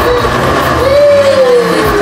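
Electric countertop blender running at full power, its motor whirring loudly with a pitch that rises and then sags as it churns a thick mix.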